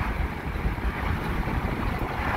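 Steady rumble of a moving vehicle, with engine, road and wind noise heard from inside the cab.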